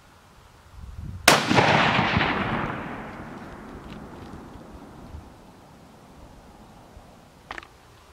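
A single 6.5 Creedmoor rifle shot about a second in, its report echoing and fading away over the next two seconds or so.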